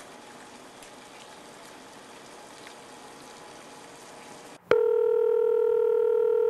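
Faint steady background hiss, then about four and a half seconds in a telephone ringback tone starts suddenly: a loud, steady, slightly beating tone heard in the caller's earpiece while the called phone rings unanswered.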